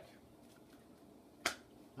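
A deck of cards set down on the table: one sharp tap about one and a half seconds in, over faint room tone.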